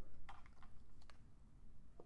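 A few faint, short clicks and scratches from dry-erase markers being handled and set to a whiteboard, in the first second or so.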